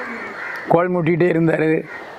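A man's voice: after a short pause, a run of about four drawn-out, level-pitched syllables about a third of the way in.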